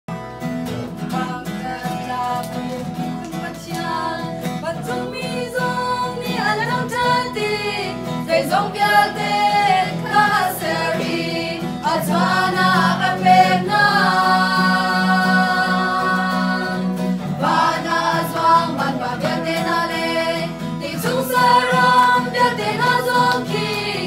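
A small mixed group of men and women singing a worship song in unison, accompanied by acoustic guitar. They hold one long chord in the middle of the passage.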